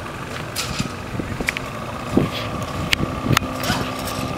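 A boat engine running steadily, a low hum over a rumbling background, with a few sharp light clicks in the second half.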